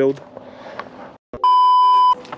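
A loud, steady 1 kHz test-tone beep, the tone of a TV colour-bars edit effect. It comes in sharply about a second and a half in, right after a brief dropout of all sound, and holds at one pitch for under a second.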